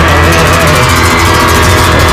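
Loud live band music with guitar, heavy bass and a steady hi-hat beat; no singing in these seconds.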